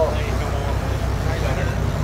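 A fishing charter boat's engine running with a steady, evenly pulsing low rumble.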